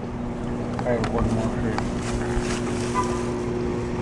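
Outdoor ambience: a steady, engine-like low hum with faint distant voices and some wind on the microphone.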